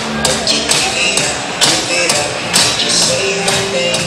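Music played over the arena sound system, with a steady percussive beat of about two beats a second under held notes.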